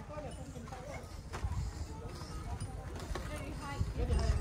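Faint voices of several people talking over a low steady rumble, with a few sharp knocks of footsteps on bamboo slats, one about a second and a half in and another near the end.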